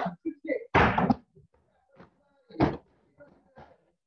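Kicks landing on free-standing heavy bags: a series of irregular thuds, the loudest about a second in and another near three seconds in.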